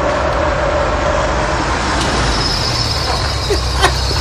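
Steady road and traffic noise with a low rumble as a car approaches and pulls up, with one sharp click near the end.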